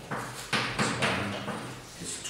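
Chalk being written on a chalkboard: several sharp taps and scratchy strokes.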